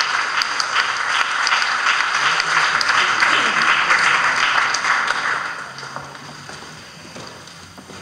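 Audience applauding steadily, then dying away about five and a half seconds in.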